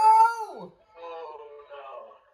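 A person's high, drawn-out yell of excitement, held almost on one pitch and then dropping away about half a second in, followed by quieter talking.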